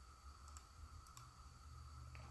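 A few faint clicks from someone working a computer, about half a second and again a little over a second in, over a low steady hum.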